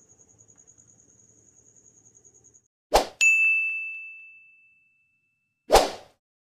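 Subscribe-button animation sound effect: a short whoosh, then a bright bell ding that rings out for about a second and a half, and another whoosh near the end. Before it, a faint, evenly pulsed high chirping.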